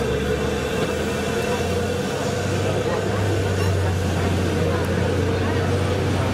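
Vehicle engine idling: a steady, unbroken low hum.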